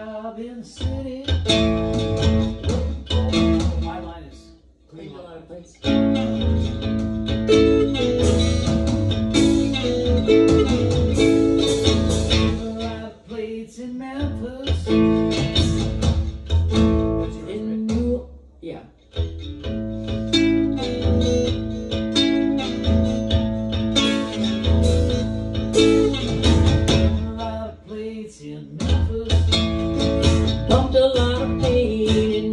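An amplified acoustic guitar and an electric keyboard play a song together, with strong bass. The playing nearly stops about four seconds in, starts again about two seconds later, and dips briefly again past the middle.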